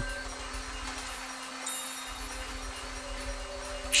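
Soft background music of held, sustained tones, under a continuous light clatter of plastic lottery balls tumbling in a spinning clear drum.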